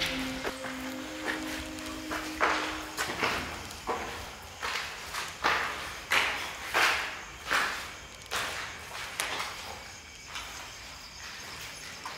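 Footsteps walking at a steady pace, about three steps every two seconds, loudest in the middle, over a held low music tone that stops about three seconds in.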